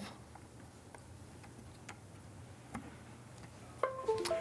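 Faint scattered clicks of a micro-USB programming cable being plugged into a DMR mobile radio and the unit being handled. Near the end comes a short run of tones stepping down in pitch.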